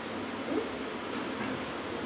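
Steady background hiss.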